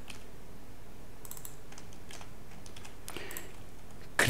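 Computer keyboard typing: scattered keystrokes in short runs, over a steady low hum.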